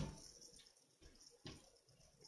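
Near silence: room tone, broken by a short click at the start and a fainter one about one and a half seconds in.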